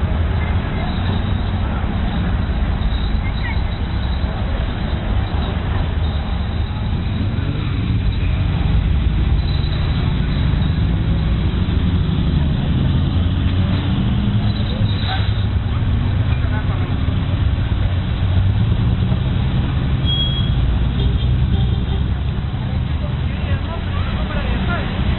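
Car engines running as cars drive slowly past, a steady low rumble, with people talking in the background.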